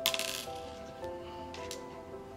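Checker pieces clicking against a wooden game board as they are moved and lifted: a short clattering rattle at the start and a single click near the end. Background music with held notes runs underneath.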